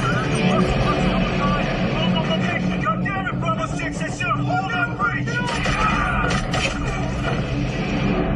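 Action-film sound mix: a steady low rumble under shouting voices, with a quick cluster of sharp bangs about five and a half to six and a half seconds in.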